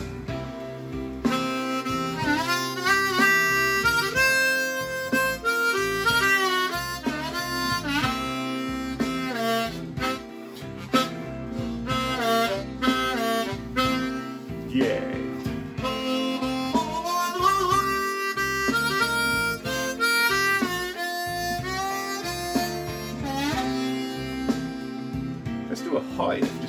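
Diatonic harmonica in F played in second position (cross harp) for a blues in C: a run of blues licks with bent notes sliding in pitch, over a blues backing track. It starts suddenly.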